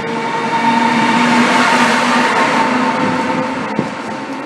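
Siemens ACS64 electric locomotive passing close by at speed while pushing its train: a steady whining tone over the rush of the wheels on the rails, loudest around the middle and easing off near the end as it pulls away.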